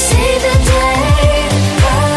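Pop song with a steady kick-drum beat, about three to four beats a second, under held tones and a sung melody.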